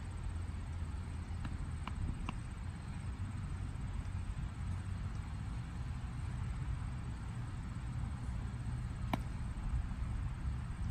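Steady low outdoor rumble across an open ball field, with a few faint ticks about a couple of seconds in. Near the end comes one sharp pop of a thrown baseball landing in a leather glove.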